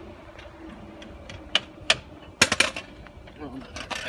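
Sharp metallic clinks of hand tools and metal parts being handled. There are single clinks about a second and a half and two seconds in, then a quick cluster of them a moment later.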